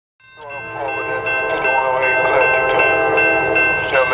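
Air horn of a CSX GE AC4400CW (CW44AC) diesel locomotive sounding one long, steady chord that fades in and is held nearly to the end.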